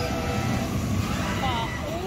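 Reverse-bungee slingshot ride launching, heard as a steady rumble of wind and outdoor noise, with riders' voices rising upward near the end as they begin to scream.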